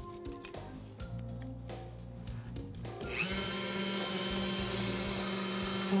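A handheld mini electric rotary drill is switched on about halfway through, spins up briefly, then runs with a steady high whine as its bit bores holes in a white plastic tube. Before that there are a few light clicks of the bit being fitted.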